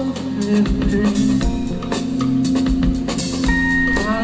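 Live rock band playing an instrumental stretch with no singing: drum kit, bass and electric guitar, with regular drum hits over a steady bass line. A held high note comes in near the end.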